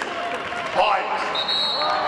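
Voices of players and spectators in a gymnasium between volleyball rallies, with one sharp thump on the hardwood about a third of the way in and a short high squeak near the end.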